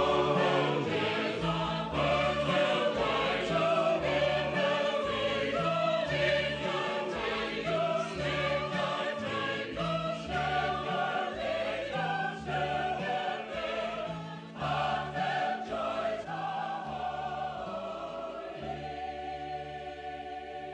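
Choral singing of a slow, hymn-like song over a regular bass line. It grows softer near the end and settles into quieter held chords.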